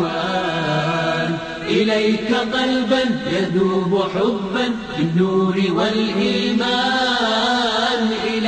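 An Arabic nasheed sung in a chanting style, the melody held in long, wavering notes.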